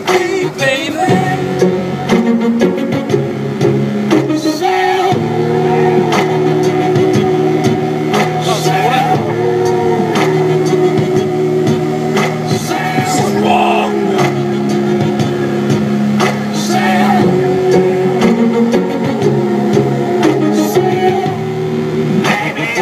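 Music with a sung melody and sustained notes.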